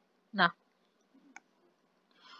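A brief vocal sound, then a single faint click of a computer mouse button just over a second later.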